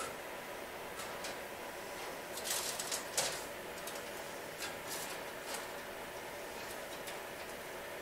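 Rustling and light clicks from an adhesive LED light strip and its blue backing tape being handled, with a few louder rustles about two and a half to three seconds in, over a steady background hum.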